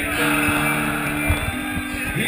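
Live punk rock band heard from the crowd in a concert hall: distorted electric guitars holding droning chords over bass, with a few drum hits. The chords change about three quarters of the way through.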